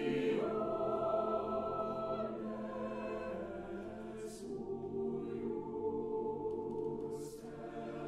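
Mixed chamber choir singing held chords that move every couple of seconds. Twice, about four and seven seconds in, the voices land an 's' consonant together as a short hiss.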